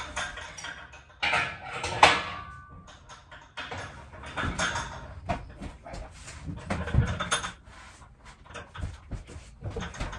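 Irregular metal clanks, knocks and scrapes from handling a shop crane rigged to a Bridgeport mill's turret and ram. One sharp clank about two seconds in rings briefly; further knocks come around the middle and near seven seconds.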